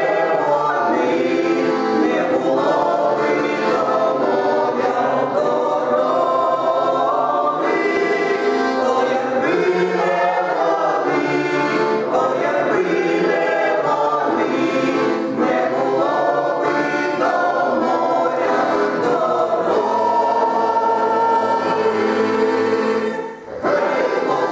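A mixed choir of men's and women's voices singing a Ukrainian folk song in harmony, with a brief break between phrases just before the end.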